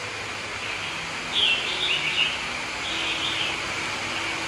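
Steady hiss and bubbling of air-lift sponge filters aerating rows of fish tanks, over a faint low hum. Short high bird calls come in about a second in and again near three seconds.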